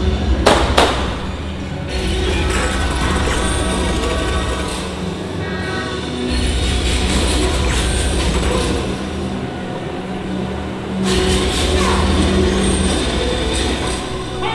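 Loud stunt-show soundtrack over arena loudspeakers, mixed with a steady low drone from a stunt boat's engine that swells and fades in stretches. There are two sharp cracks at the very start.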